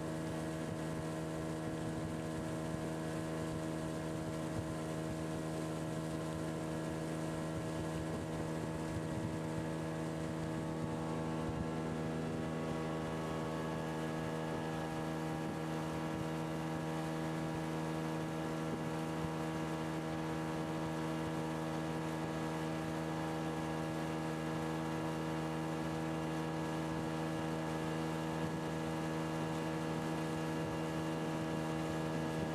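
Outboard motor of a small boat running at a steady cruising speed: a constant hum that holds one pitch.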